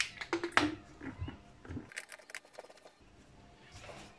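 Small clicks and rustling of a plastic sensor cap and its wires being handled and fitted onto a plastic coolant expansion tank, with several sharp clicks in the first couple of seconds and then a brief pause.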